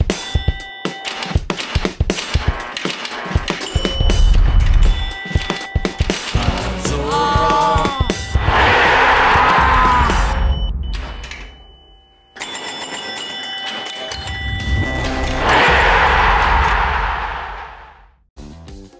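Television channel ident soundtrack: music mixed with sound effects and many short sharp hits. Twice, about halfway through and again near the end, a loud noisy swell rises for a couple of seconds and then fades out.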